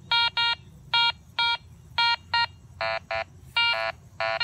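Metal detector sounding target tones as its coil is swept back and forth: about ten short beeps, mostly in pairs, some high-pitched and some lower. The mix of high and low tones comes from a buried target whose reading jumps between about 20 and 83.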